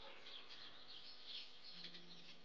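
Near silence with a faint, high chirping ambience.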